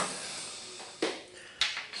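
Trading cards being handled and set down by hand on a wooden table, with two light taps, one about a second in and another just over half a second later.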